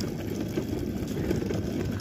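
Steady low noise of wind on the microphone.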